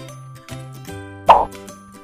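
Light background music with evenly spaced pitched notes. About a second in, a short, loud pop sound effect cuts over it.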